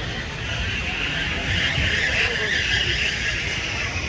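Vintage-style open-wheel roadster's engine running at low revs as the car pulls slowly away, a low rumble under a hiss that swells and fades in the middle.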